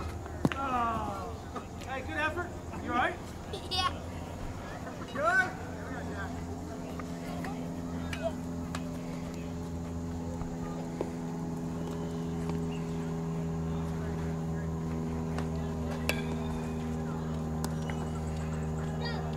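Distant voices calling across a ball field in the first few seconds, with a sharp knock about half a second in. Then a steady engine-like hum with several even tones sets in about six seconds in and carries on.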